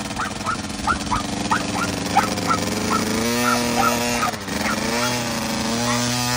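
A small dog barking in quick, high yaps, about three a second, over the steady idle of a 50cc Husqvarna two-stroke kids' dirt bike. The yaps thin out after about three seconds, leaving the engine's even note to the fore.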